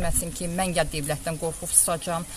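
A woman speaking in Azerbaijani, talking on without a pause.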